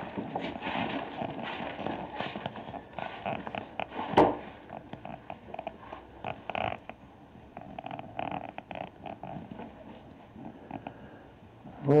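Irregular rustling, scuffing footsteps and handling noise from someone moving through a cluttered room, with a sharp knock about four seconds in.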